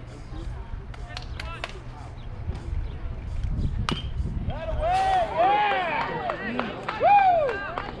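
One sharp crack of a baseball struck at the plate about four seconds in, followed by young players' drawn-out shouts and chants, over a steady low rumble.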